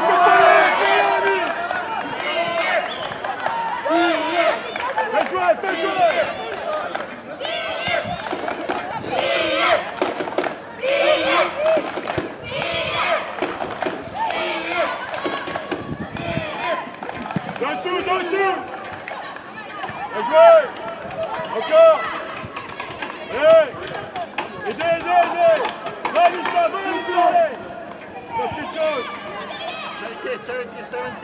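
Footballers' voices shouting and calling to each other on the pitch, with no clear words, including a few short, loud, high calls in the second half.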